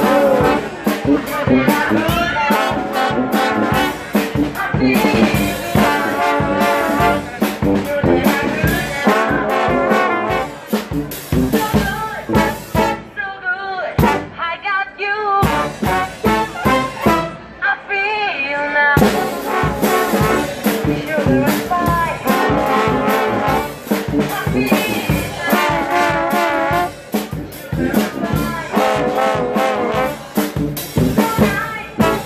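Street brass band playing a funk number: trombone, trumpet, saxophone and sousaphone over snare drum and bass drum with cymbal keeping a steady beat. The drums drop out twice for a second or two about halfway through while the horns carry on.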